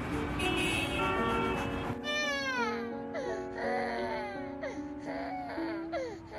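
Music with sustained notes, a hissing noise under it for the first two seconds, then a dog whimpering: a series of high whines that each fall steeply in pitch.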